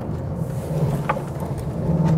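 Volkswagen Golf GTI Clubsport's 2-litre turbocharged four-cylinder engine heard from inside the cabin while driving, with a short click about a second in. Its note climbs and gets louder near the end as the car accelerates.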